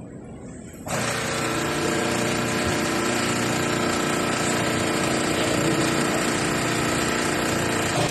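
Electric hydraulic pump of a 3-in-1 busbar bending, cutting and punching machine starting about a second in and running steadily while it drives the bending ram.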